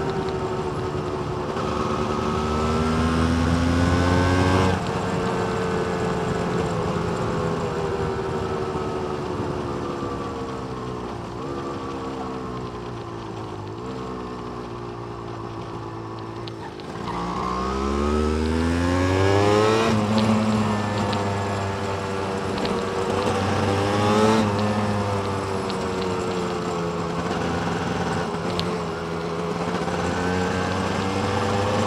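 Yamaha DT200R's two-stroke single-cylinder engine under way. The revs climb, drop off at about 5 seconds and fall slowly for some ten seconds as the throttle is eased. At about 17 seconds it accelerates sharply again, then runs on with small rises and falls in pitch.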